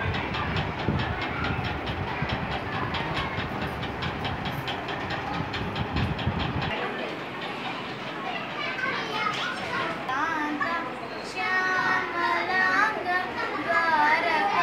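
A fast, even rhythmic clatter with noise for about the first half. Then, after a cut, a voice sings a melody with wavering, held notes that grows louder near the end.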